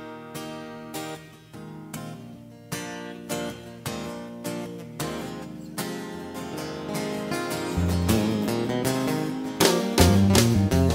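Acoustic guitars playing the opening of a country song: single strummed chords struck and left ringing, building steadily louder, with a fuller low end joining near the end.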